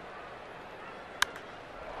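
Steady ballpark crowd ambience, broken about a second in by a single sharp crack of a wooden bat hitting a pitched baseball, driving a deep fly ball.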